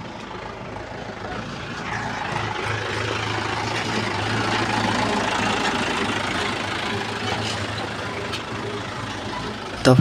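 Diesel engine of a farm tractor hauling a loaded trailer, running close by with a steady low hum. It grows louder from about two seconds in as the tractor comes alongside, then eases slightly near the end.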